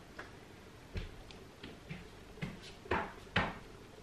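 A series of about five dull knocks and thumps from dumbbells being set down and handled on a wooden floor and exercise mat, the loudest two close together near the end.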